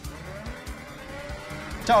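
Faint sound of a Red Bull Formula 1 car's V6 turbo-hybrid engine from onboard pit-stop footage, a thin, nearly steady tone, heard under a quiet background music bed.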